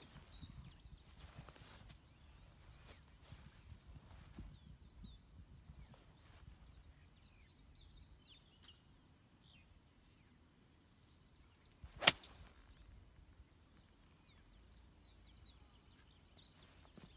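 A 5-iron striking a golf ball out of the rough: one sharp crack about twelve seconds in, much louder than anything else. Faint bird chirps are heard before and after it.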